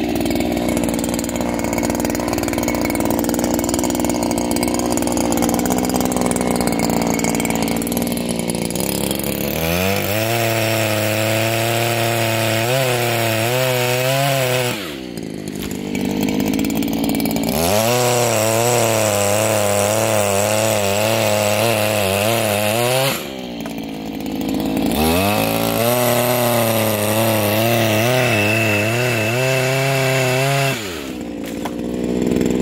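Petrol pole saw (long-reach pruning chainsaw) with a small gasoline engine and chain bar, cutting branches. It runs steadily for about nine seconds, then revs up into the cut with its pitch wavering under load. It eases off briefly twice, at about fifteen and twenty-three seconds in, before revving up again.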